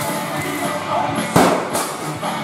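Rock music with singing, and a single loud crash a little past halfway: something being smashed.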